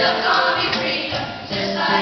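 Music: a group of children singing together over an instrumental accompaniment.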